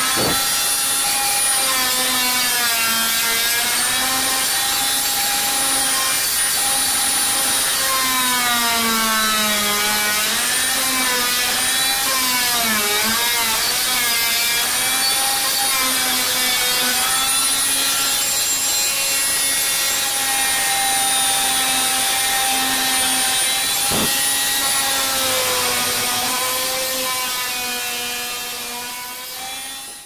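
Handheld power tool with a flat blade running, cutting away the old perished bath sealant: a steady motor whine whose pitch wavers and dips as the blade is pushed along the joint. It winds down over the last few seconds.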